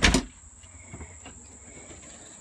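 A door being shut, a single loud thud at the very start, followed by quiet with a faint steady high-pitched whine in the background.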